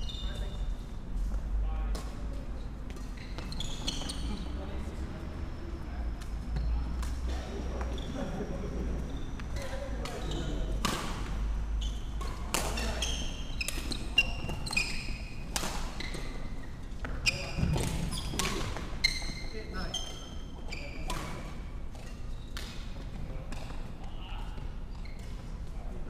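Badminton rally: sharp racket strikes on the shuttlecock at irregular intervals and short high squeaks of court shoes on the wooden floor, with a low steady hum underneath.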